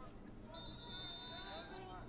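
A lacrosse referee's whistle sounds faintly as one steady high note lasting just over a second, with faint distant voices around it.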